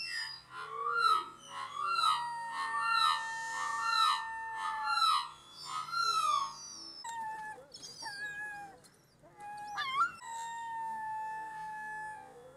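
Background music with long held notes and a run of gliding, arching notes, like a theremin or synthesizer.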